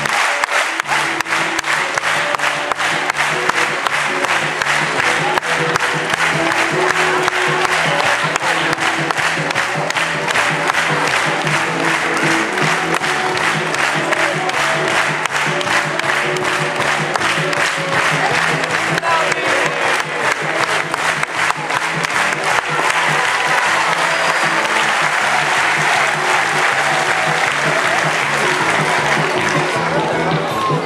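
Audience applause that goes on steadily throughout, with music playing underneath.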